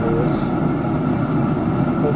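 Steady whirring, rushing noise of a Traeger pellet grill's fan running while the lid is open, with a spoken word at the very start.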